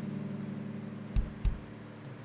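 A strummed acoustic guitar chord ringing out and slowly fading, with two low thumps a little after a second in, about a third of a second apart.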